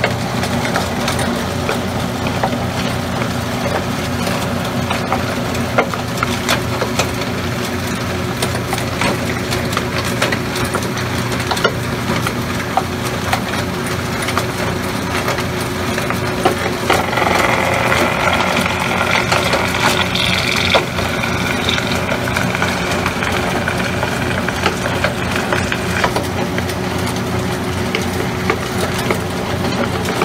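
Hard-rock gold ore processing plant running: a steady hum of electric motors under continuous rattling and frequent sharp cracks of ore being crushed and ground. A louder rushing hiss comes in a little past halfway and fades a few seconds later.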